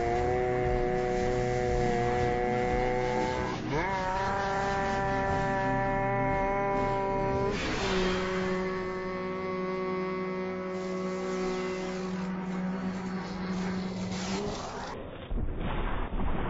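A heavily slowed, time-stretched sung note drawn out into a steady droning chord that slides up in pitch twice, about four and eight seconds in. Near the end it cuts off suddenly and gives way to louder, unslowed sound.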